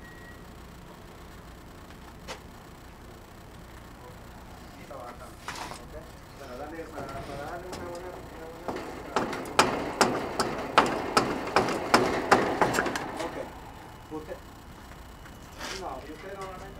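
A run of sharp metal knocks, about three a second for some four seconds, from work on the shaft of an air-conditioner fan motor to free the fan fitted on it, after WD-40. Low voices murmur just before the knocks.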